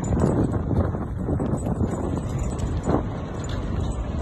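Wind buffeting a phone's microphone: a loud rushing noise that swells and dips, with stronger gusts just after the start and about three seconds in.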